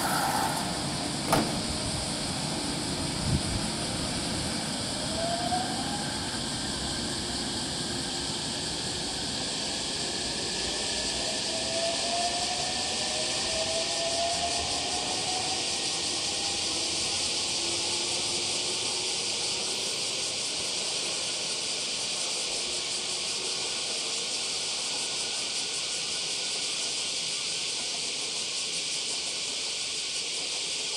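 JR West 225 series electric train pulling away from the platform: two sharp knocks in the first few seconds, then the whine of its electric traction motors rising in pitch as it speeds up, over a steady high hiss.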